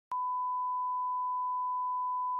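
Steady 1 kHz line-up test tone of the kind that runs with SMPTE colour bars, a single unwavering beep that switches on with a click just after the start.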